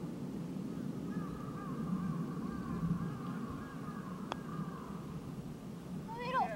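A single light click of a putter striking a golf ball, about four seconds in, over a low steady outdoor rumble.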